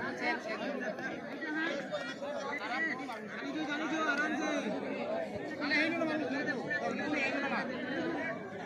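Many voices talking over one another throughout: a crowd of spectators chattering.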